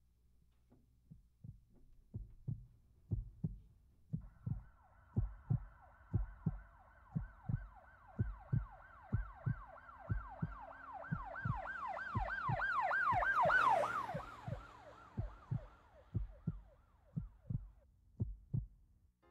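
Heartbeat sound effect, a low double thump about once a second, under a warbling siren that comes in about four seconds in, swells to a peak near the end, then fades away.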